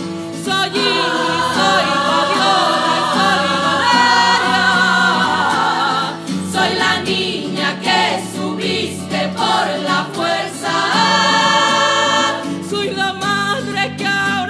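A women's choir singing in harmony, with long held notes, some wavering with vibrato, over low sustained tones.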